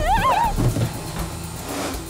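Cartoon sound effects: a short warbling, wavering cry, then a few low thuds, and a rising whoosh near the end.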